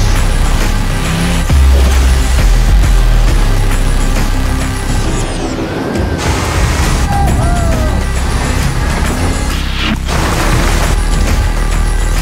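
Film soundtrack: a loud, deep rocket-launch rumble starts abruptly at the end of a countdown and runs on under music, with a few short swooping tones in the middle.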